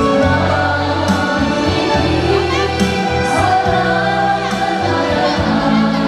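A women's vocal group singing a Christian worship song in unison into microphones, over instrumental accompaniment with sustained bass notes.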